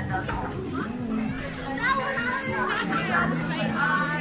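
A group of schoolchildren chattering and calling out to each other as they pass close by, several voices overlapping. Music plays in the background.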